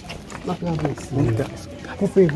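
A man talking, in short bursts of speech.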